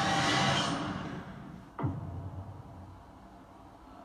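Film-trailer sound effects. A rushing whoosh from a swirling time portal fades over about the first second. About two seconds in comes a sudden boom that sweeps down in pitch, followed by a low rumble that trails off.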